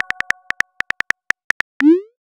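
Phone keyboard typing sound effects from a texting-story app: a quick, irregular run of about fifteen sharp key clicks, ending in a short rising swoosh as the message is sent. The fading tail of a chime-like message tone is heard at the start.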